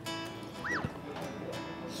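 Background music with a short comic sound effect about two-thirds of a second in: a whistle-like pitch that quickly rises and falls, followed by a falling sweep.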